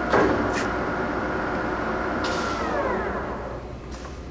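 Ganesh GT-3480 engine lathe's spindle drive running at a steady higher speed with a whine of several tones. About two and a half seconds in, after a brief hiss, the whine falls in pitch and fades as the spindle slows down.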